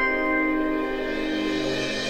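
Live band's song introduction: a held keyboard chord rings on and slowly fades after a run of struck notes, and a soft, airy wash of higher sound swells in beneath it near the end.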